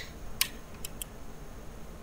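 Three quick computer mouse clicks: one, then a close pair about half a second later, over faint room hiss.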